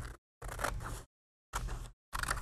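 Scissors cutting through a sheet of paper: two short snips of about half a second each, separated by silence.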